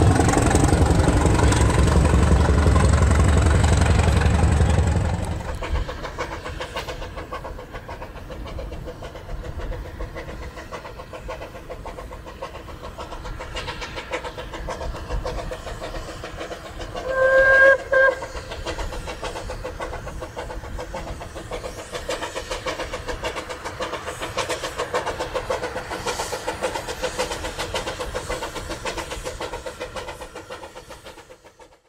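A diesel multiple-unit train running: loud and rumbling for about five seconds, then quieter with a steady run of clatter. A short horn blast sounds about halfway through, and the sound fades away at the end.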